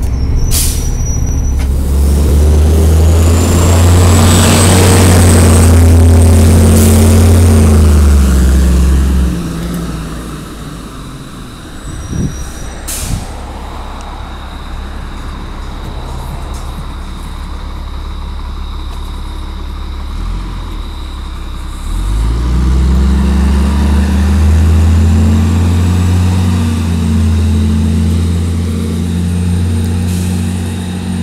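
A 2000 NABI 40-SFW transit bus's Cummins M-11 diesel pulling hard, heard from inside the cabin, with a high whine rising as it gains speed. About nine seconds in it eases off to a quieter, steady run with a couple of short sharp sounds. Some 22 seconds in it pulls away again, the whine rising once more.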